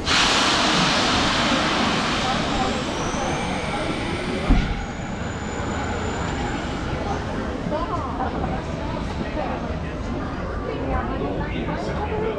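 A sudden loud hiss of venting air that fades over about four and a half seconds and ends with a short thump, over crowd chatter.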